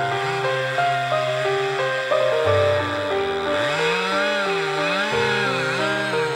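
Background music with a tune of quick steady notes. Under it a top-handle chainsaw is cutting through a lime trunk, its engine pitch rising and falling over and over in the second half.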